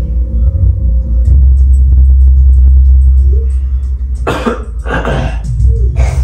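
Loud bass-heavy music playing throughout, with a person coughing twice about four and five seconds in.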